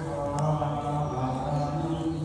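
A Buddhist monk chanting in a low voice, holding long syllables almost on one note.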